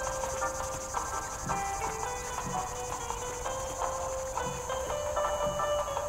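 Crickets trilling steadily with soft melodic music underneath, its held notes changing pitch every second or so.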